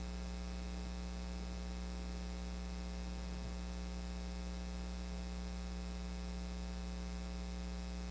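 Steady electrical mains hum with a buzzy stack of overtones, unchanging throughout.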